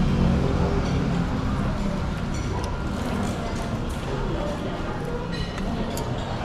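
Restaurant dining-room background: a murmur of voices with music playing.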